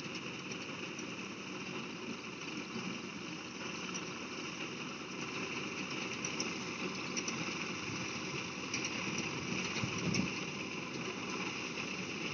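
Tractor engine running steadily as it drives a reaper-binder cutting wheat, getting a little louder in the second half.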